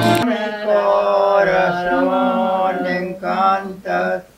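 Acoustic guitar and group singing that cut off abruptly a quarter of a second in, followed by a voice singing slow, drawn-out notes without the guitar, breaking into shorter phrases with brief pauses near the end.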